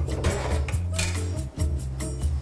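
Background music with a steady, repeating bass beat.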